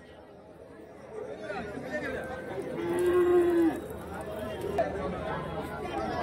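A cow mooing once, a steady held call about three seconds in, over the chatter of a crowd.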